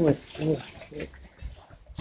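A woman's voice: a few brief murmured syllables, then quiet.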